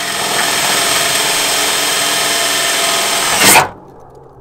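Power drill running steadily as it bores a small hole in the metal liftgate panel of a minivan, briefly louder just before it stops suddenly.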